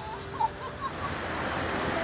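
Whitewater river rushing over rapids in a steady, even roar of water, which grows louder about a second in.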